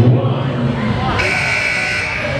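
An electronic buzzer sounds a steady tone, starting a little after a second in and lasting under a second, over a noisy crowd of voices in a hall: a robot-competition match-timer buzzer.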